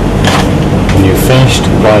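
A loud, steady low hum with background noise, and a voice starting to speak about a second in.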